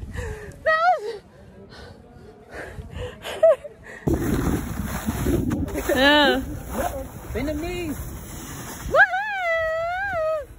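Young women's voices laughing, squealing and whooping without words, ending in a long, high, rising-and-falling whoop near the end. From about four seconds in, a low rushing noise runs underneath.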